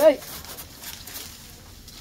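Hand pruning saw rasping faintly and steadily through a thick lemon-tree branch, cutting free an air layer; a man's voice ends just at the start.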